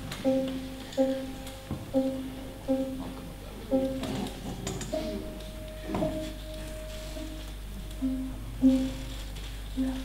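Soft, slow plucked-string notes opening a folk tune, picked about once a second in an even pattern, with a longer held note midway before the picked notes resume.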